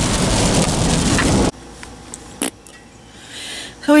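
Heavy rain drumming on a car's roof and windshield with road noise, loud and steady, cutting off abruptly about a second and a half in. After that the car interior is quiet apart from a single click.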